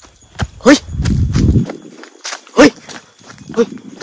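A man's short startled shouts, three of them, with a burst of low rumbling handling and movement noise between the first two and a few sharp clicks.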